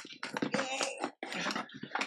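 Cardboard box being cut and torn open by hand: a run of short, irregular rasping tears and scrapes of packing tape and cardboard.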